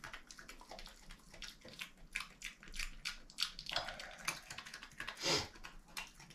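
European badger eating dry food off a tiled floor: a quick, irregular run of small crunching clicks as it chews, with a short louder breathy burst near the end.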